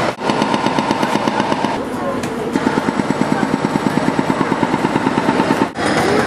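A small engine running with a rapid, even chugging beat, with voices in the street; it cuts off suddenly near the end.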